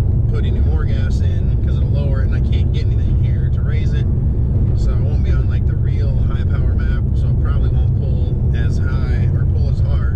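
Steady low rumble of road and engine noise inside the cabin of a moving 2017 Honda Civic EX-T, under a man talking.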